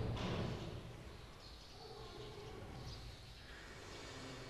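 A pause in amplified Quran recitation: the echo of the last recited phrase dies away in the first second, leaving faint room noise in the hall.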